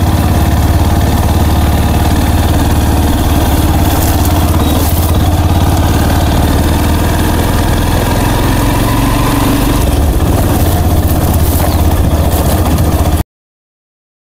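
Motorcycle engine running steadily under way, with a dense rush of noise over a low, even rumble. It cuts off suddenly near the end.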